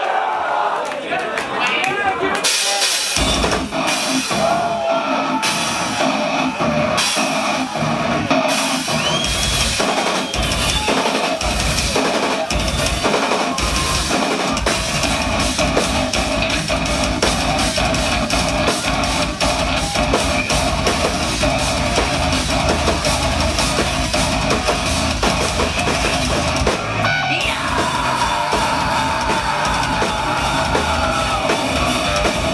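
A live progressive metal band playing the opening of a song on drum kit and amplified instruments. It begins as sharp full-band hits spaced about a second and a half apart, then breaks into continuous heavy playing with a pounding kick drum about halfway through. There is a brief break near the end, followed by a held high note.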